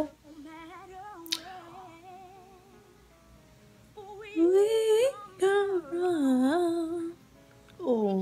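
A woman humming and singing along to a pop song playing faintly in the background, swelling into loud close-up singing about halfway through. A single sharp click comes early, about a second in.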